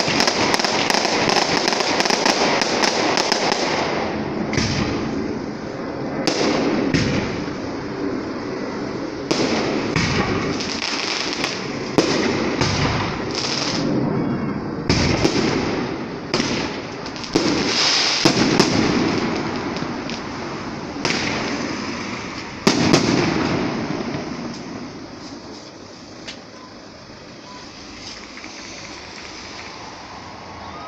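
Fireworks display: dense crackling at first, then a run of sharp bangs with crackle between them. The bangs thin out and the sound fades over the last several seconds.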